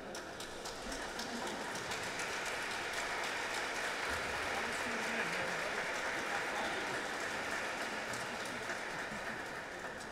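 A large congregation applauding, the last notes of the music dying away as it starts. The clapping swells to a peak about halfway, then slowly tapers off.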